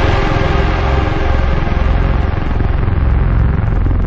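Electronic music mix in a transition: a dense, steady rumbling drone with no clear beat, its high end gradually filtered down.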